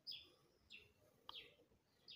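Marker squeaking faintly on paper in a few short, high chirps that fall in pitch, as it draws a box around a written formula.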